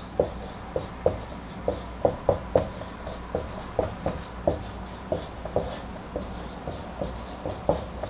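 Marker pen writing on a whiteboard: a run of short, irregular strokes, two or three a second, as letters and symbols are drawn.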